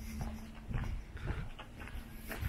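Footsteps on a cobblestone street, a little under two steps a second, with a faint steady hum underneath.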